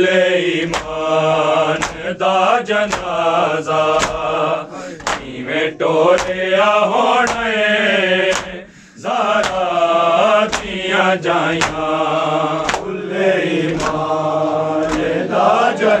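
A group of men chanting a Punjabi noha lament together, with sharp chest-beating slaps of matam keeping time about once a second.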